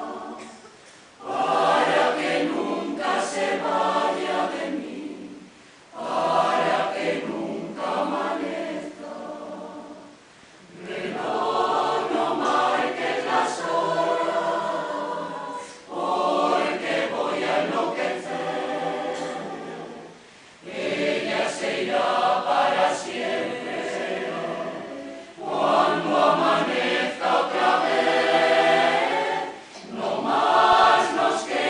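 Mixed choir of women's and men's voices singing in phrases of about four to five seconds, separated by brief pauses.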